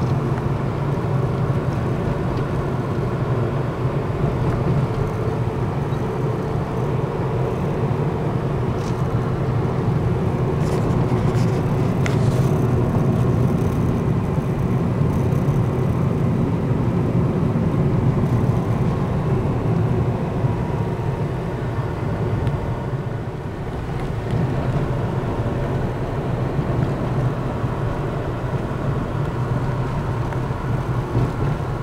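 Car driving, heard from inside the cabin: a steady low drone of engine and tyre noise.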